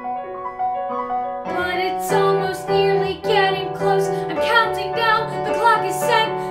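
Musical-theatre song: a recorded piano accompaniment plays alone at first, then a fuller backing comes in about one and a half seconds in, and a boy sings over it.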